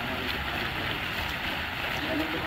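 Fountain jets splashing steadily into their pool, a continuous rushing of falling water.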